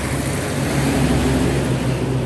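Traffic passing on a highway close by: a container truck and a motorcycle going past, a steady engine hum over road noise.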